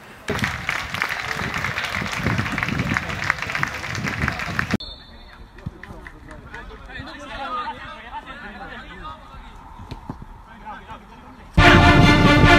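Outdoor sound at a small football ground: a loud rushing noise for the first few seconds, then, after an abrupt cut, quieter distant voices. Music starts suddenly near the end.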